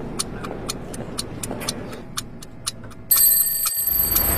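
Regular ticking, about four ticks a second, like a clock. About three seconds in it is cut across by a sudden, louder sound holding steady high-pitched tones.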